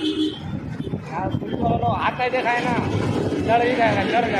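A man's voice, unclear words, starting about a second in, over the steady noise of road traffic.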